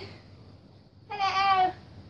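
A girl's high voice gives a short, drawn-out sung call about a second in. It lasts about half a second and dips slightly in pitch at the end.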